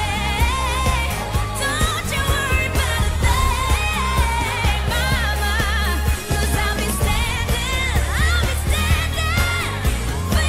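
Pop song with a solo voice singing a bending, ornamented melody over a steady bass line.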